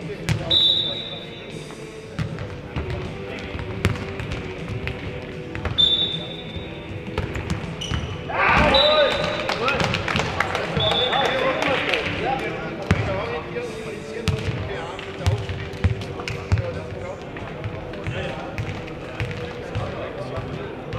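Futnet ball thudding on the hard indoor court and off players' feet during a rally, in a large echoing hall, with players shouting loudly for several seconds in the middle.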